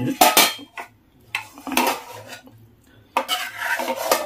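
Close-miked eating sounds at a meal table: spoons and fingers clattering against plates and bowls in three short bouts, the last one joined by a sip from a glass of broth near the end.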